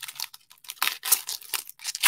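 Foil trading-card pack (2022-23 Bowman University Inception) being torn open by hand: a string of irregular crinkling, ripping crackles.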